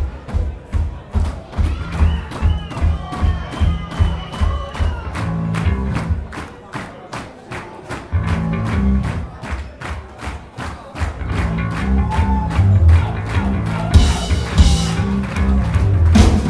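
Hardcore punk band playing live: a driving drum beat of about four hits a second over heavy bass guitar, building up and going fuller and louder with crashing cymbals near the end.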